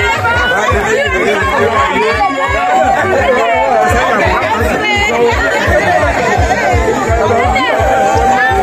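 Many people talking and chattering at once over music with a steady, fast low beat.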